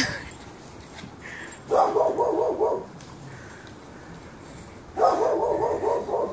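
A pet dog whining in two drawn-out, wavering calls of about a second each, the first about two seconds in and the second near the end.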